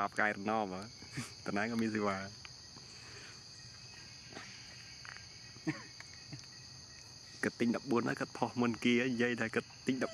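Steady high-pitched drone of insects, a cricket or cicada chorus, throughout, with a person's voice talking during the first two seconds and again in the last couple of seconds.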